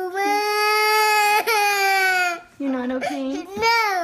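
A toddler girl crying: one long, high-pitched held cry lasting about two and a half seconds, then, after a short breath, shorter broken sobbing cries near the end.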